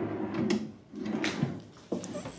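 Wooden dresser drawers sliding on their runners as they are pushed shut and pulled open: two slides, each with a knock, then a sharp click near the end.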